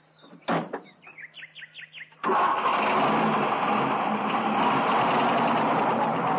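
A car door shuts with a knock, and a few bird chirps follow. About two seconds in, a convertible sports car's engine starts abruptly and runs steadily and loudly as the car drives off.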